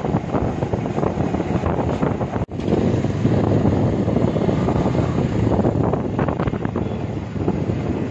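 Heavy wind buffeting the microphone on a moving two-wheeler, with road noise underneath. The sound cuts out briefly about two and a half seconds in, then resumes just as loud.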